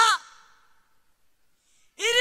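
A woman's amplified voice trails off on a breathy ending, with hall echo fading out, then near silence: a pause in her preaching.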